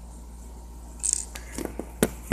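Small handling sounds of a Lego minifigure: a brief scrape about a second in, then a few light plastic clicks as the hair piece is pulled off the head, over a low steady hum.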